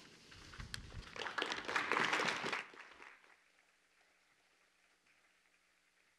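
Audience applauding, swelling and then dying away about three seconds in, leaving quiet room tone with a faint steady hum.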